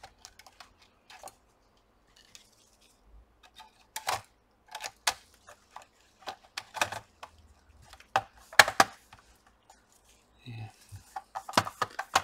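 Plastic snap clips of a laptop palmrest clicking into place as the top case is pressed down onto the base: a scattered series of sharp plastic clicks, the loudest close together about eight to nine seconds in.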